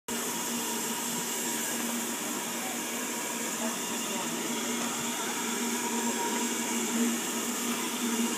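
BR Standard Class 4 steam locomotive 75029 standing, with a steady hiss of escaping steam and a steady low hum under it.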